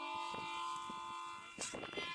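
A harmonica holding a steady reedy chord for about a second and a half, then a short breathy hiss near the end.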